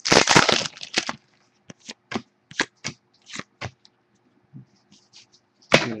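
Foil wrapper of a 2011 Panini Prestige football card pack torn open with a loud crinkling rip in the first second. Scattered crinkles and clicks follow as the wrapper and cards are handled, with another sharp crinkle near the end.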